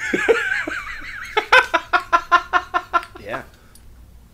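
A man laughing: a breathy giggle, then a long run of even 'ha-ha' pulses, about five a second, that dies away near the end.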